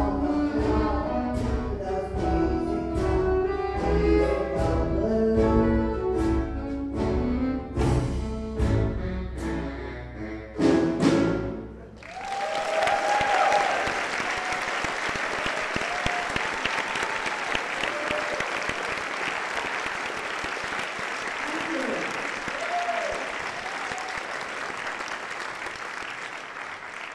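A live band plays the closing bars of a song, which end abruptly about halfway through. The audience then breaks into steady applause with a few shouts, which slowly fades toward the end, heard from within the audience.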